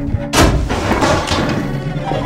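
A loud, sudden bang about a third of a second in, fading out over about a second, with low, dark film music underneath.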